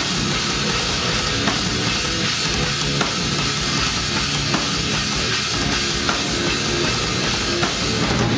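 Live heavy metal band playing at full volume: drum kit with rapid bass-drum beats under electric guitars.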